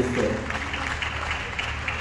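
Audience applauding: a steady spread of many hand claps.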